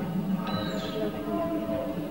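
Live music from the stage band, with a few notes held from about half a second in.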